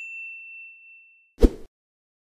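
Notification-bell sound effect: a single high ding rings out and fades away. About a second and a half in, a short, loud thump follows.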